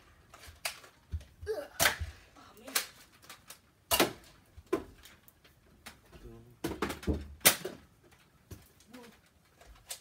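Foam-dart blasters firing and darts striking: a dozen or so sharp snaps and knocks at uneven intervals, with short voice sounds in between.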